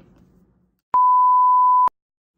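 A steady 1 kHz test-tone beep, the kind laid under TV colour bars. It starts abruptly out of dead silence about a second in, holds one pitch for about a second, and cuts off with a click.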